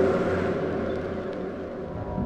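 A steady wash of noise, with no clear pitch or beat, fading out over about two seconds between tracks of a lo-fi hip-hop beat tape.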